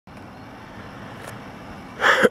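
Steady low background rumble, with one faint click a little past halfway.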